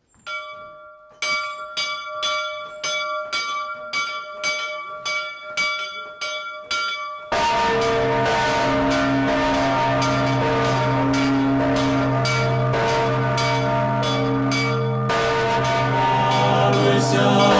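A church bell struck repeatedly, about two strikes a second, each strike leaving a ringing chord of tones. About seven seconds in it gives way abruptly to louder, fuller ringing with deep sustained tones under continuing strikes.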